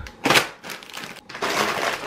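Plastic packet of dry Makfa pasta crinkling as it is handled, with a louder crackle about a third of a second in and steady rustling from about halfway.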